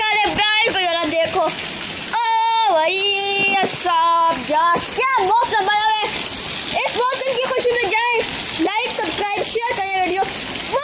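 A child's high-pitched voice talking or calling in short bending phrases, over the steady hiss of rain and running water.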